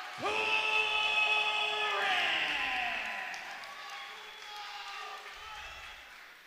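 A ring announcer's long, drawn-out call of a fighter's name over a microphone and PA. The voice holds one steady note for about two seconds, then slides down and fades, echoing in a large hall.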